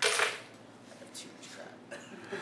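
Objects being set down on a stainless-steel table top: a brief clatter at the start, then a few faint clicks.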